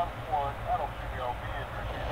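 Faint fragments of a radio voice over a steady low hum, thin and muffled like an old air-to-ground radio link. This is archival Apollo 11 lunar-descent radio audio from around the 1202 program alarm.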